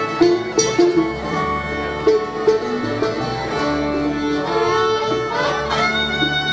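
Bluegrass band playing an instrumental break with no singing: a fiddle carries the melody in long, sliding notes over a quick plucked-string backing of banjo and guitar.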